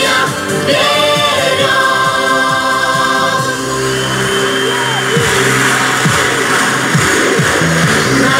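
Upbeat Russian pop song playing loudly, with a steady drum beat under sustained instrumental and vocal tones.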